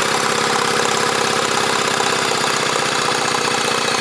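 Electric drill spinning a British Seagull outboard's flywheel magneto through a socket on the flywheel nut, running steadily at speed. This is the 'drill trick' spin-up, done to get the ignition points sparking again.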